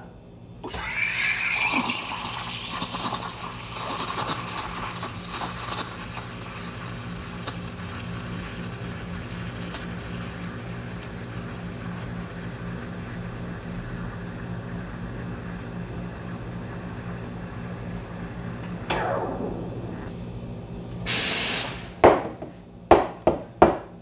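Espresso machine steam wand frothing milk in a stainless steel pitcher, aiming for about 70 °C. The hiss starts a second in and is uneven and sputtering for the first few seconds while the milk takes in air, then settles into a steadier, quieter hiss as the milk spins and heats. Near the end the steam fades out, followed by a short loud burst of hiss and a few knocks.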